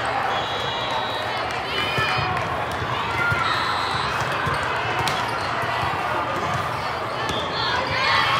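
Volleyball hall ambience: many voices from players and spectators, with short sneaker squeaks on the court floor and the knocks of volleyballs being hit and bounced, in a large echoing hall.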